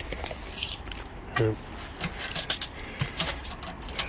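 A few light clicks and rattles over about a second, against a low steady background rumble.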